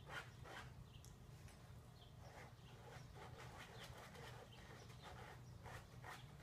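A dog faintly sniffing and scratching as it noses and paws at a flattened folding-chair frame, in short scrappy bursts.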